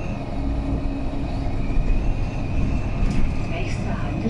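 Interior running sound of a Mercedes-Benz Citaro O530G articulated bus on the move: the OM457hLA straight-six diesel gives a steady low rumble, with a steady high whine over it.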